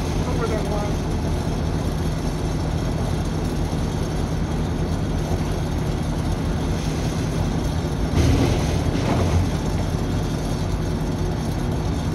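Crane Pumps Sithe Envie chopper pump running with a steady low hum. About eight seconds in, a louder, rough churning lasts a second or so as a cotton mop head is drawn in and shredded.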